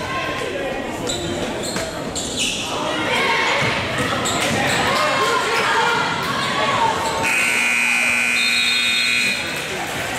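A gym scoreboard horn sounds one steady, loud tone for about two seconds near the end, stopping play. Before it there are crowd and player voices and basketball bounces echoing in a large gym.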